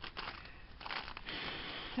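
Packaging being handled and crinkled: a few light clicks, then a steadier rustle through the second second.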